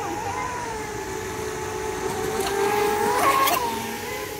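Radio-controlled model speedboat's motor running with a steady whine. The whine grows louder as the boat passes close about three seconds in, its pitch rising and then dropping, with a brief hiss as it goes by.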